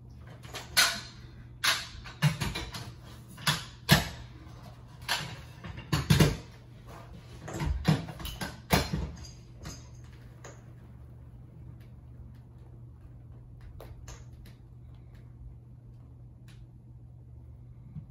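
Metal carpet power-stretcher parts clunking and clicking as they are handled and set against the wall: about ten sharp knocks spread over the first nine seconds, then only a faint steady hum.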